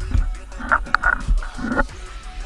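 Background music with a steady low bass, and short high yelping sounds from about halfway through.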